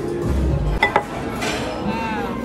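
Two quick ringing clinks of tableware about a second in, over background music and restaurant chatter.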